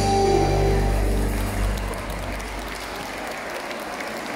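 A live band's final chord rings out and fades over the first couple of seconds as the audience applauds.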